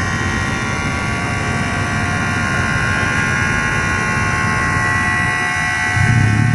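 Truck diesel engine running steadily at idle, a constant hum with a high whine over it.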